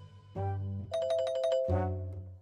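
A short musical sound-effect sting: pitched tones, then a held two-note ringing chime with a quick run of high notes over it, and a low tone near the end.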